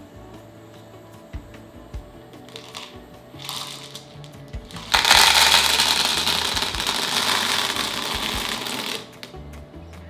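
Small plastic beads poured from one plastic cup into another: a dense rattling patter of beads landing in the cup starts suddenly about halfway through and runs for about four seconds, over soft background music.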